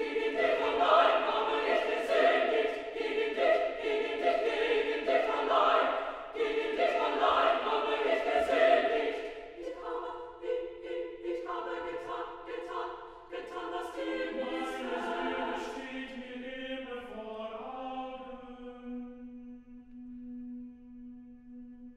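Choir singing a cappella. Loud, full chords fill the first half, then the singing drops to softer held chords that thin out toward a single low sustained note at the end.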